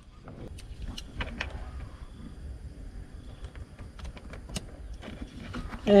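Scattered light plastic clicks and taps as a USB charger socket and the car's centre-console trim panel are handled and fitted into place, over a low steady rumble.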